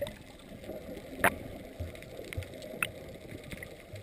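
Underwater sound heard through a GoPro's waterproof housing: a muffled wash of sea water with scattered sharp clicks, the loudest about a second in and another near three seconds, and a few short low thumps.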